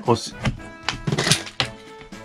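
A handful of short plastic clicks and knocks as small baby-bottle-shaped candy containers are squeezed and pried at by hand, the container halves clipped together and hard to open. Background music plays underneath.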